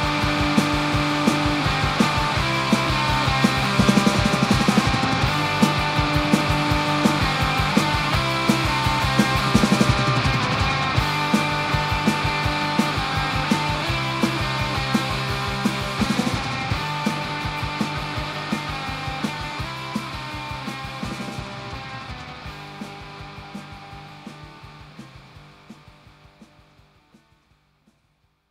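Instrumental outro of a fast punk rock song, guitars and drums driving a steady beat with no vocals. It fades out gradually over the last ten seconds or so, down to near silence.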